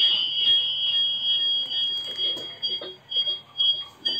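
Steady high-pitched whistle that breaks into short, quick pulses about three seconds in. It is audio feedback between a CCTV camera's built-in microphone and the monitor speaker playing its live audio.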